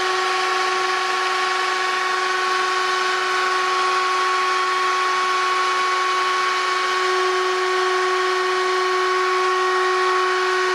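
Wood router's motor running steadily at speed: a constant high whine made of a few steady pitches over a hiss, with no change in level.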